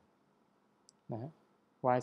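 Mostly quiet room tone with a single faint, short click just under a second in, and a brief spoken word shortly after.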